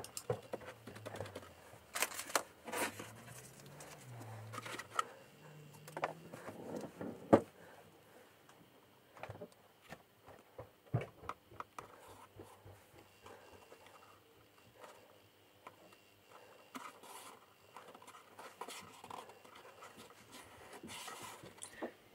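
Faint, scattered handling sounds: a round glue brush dabbing and stroking adhesive onto the board end of a slipcase, then book cloth being laid on and pressed down by hand, with light taps and clicks. The sounds thin out after about eight seconds.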